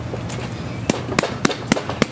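BMX seat post knocking and clicking against the frame's seat tube as it is pushed in and its height is set: a few sharp clicks, then four louder ones about a quarter second apart in the second half.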